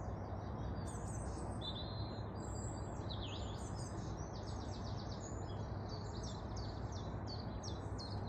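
Several small birds singing at once, a dense stream of high chirps and trills, over a steady low background rumble.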